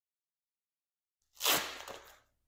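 A Velcro strap being ripped open once: a sudden, crackly tearing noise that starts a little over a second in and fades within a second.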